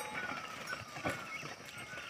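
Faint, irregular soft thuds of a pair of plough bullocks' hooves and a wooden plough dragging through dry soil.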